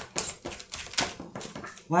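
A deck of oracle cards being shuffled by hand: a quick, irregular run of papery flicks and slaps.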